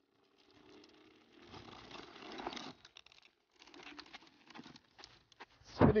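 Electric scooter tyres scraping and skidding over loose dirt and gravel as the rider brakes into a rear-wheel slide. A gritty hiss builds over about two seconds, then scattered crunches follow.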